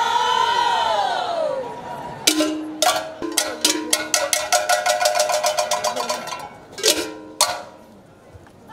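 A choir's held sung note dies away, then a metal bell is struck in a quick run of ringing strikes, several a second, for about three seconds, followed by two more separate strikes near the end.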